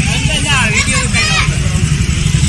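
Children's voices calling and chattering over a steady low rumble.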